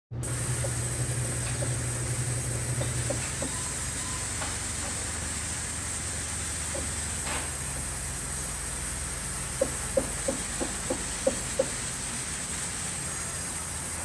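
Large vertical band saw running steadily with a low hum and a constant high hiss as a log is fed through it. About two-thirds of the way in there is a quick run of about seven sharp knocks.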